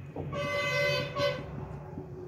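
A vehicle horn honking twice, a long steady toot and then a short one.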